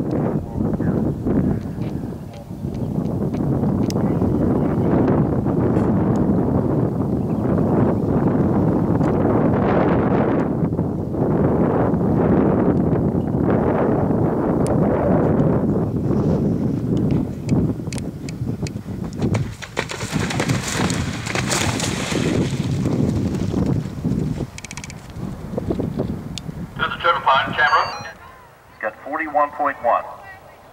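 Indistinct voices over a steady outdoor noise. A clearer voice speaks near the end.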